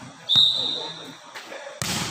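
A referee's whistle gives one short steady blast a moment after the start, signalling the serve, alongside a volleyball bouncing on the hard court. Near the end comes a loud sharp smack as the server's hand strikes the ball on a jump serve.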